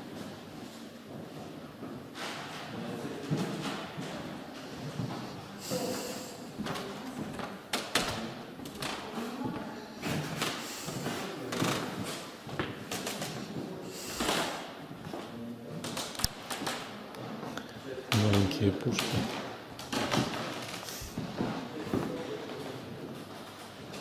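Indistinct low voices, with scattered thuds and knocks throughout.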